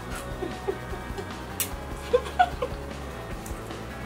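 Soft background music, with short, scattered slurping and sucking sounds of instant ramen noodles being eaten from the cup.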